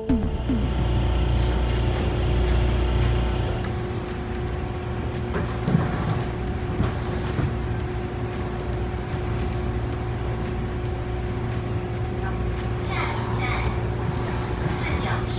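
Steady low rumble and hum inside a train carriage standing at a platform, with a constant drone from the train's machinery. Faint voices of people come in briefly about five seconds in and again near the end.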